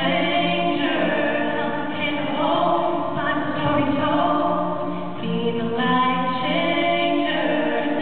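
Two voices singing a slow song in harmony, with long held notes.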